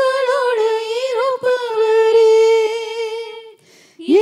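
Elderly woman singing a Tamil worship song unaccompanied into a microphone: one long held phrase that wavers, then settles a little lower in pitch and stops about three and a half seconds in.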